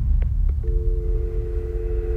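Telephone line going dead in the receiver: a couple of faint clicks, then a steady two-note dial tone, over a loud low rumbling drone.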